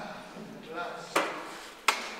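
Two sharp knocks, about three-quarters of a second apart, as a man sits down on a stage chair and settles his guitar.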